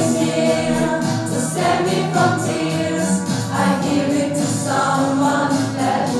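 A mixed choir of teenage students singing together in several voice parts, with steady, sustained notes.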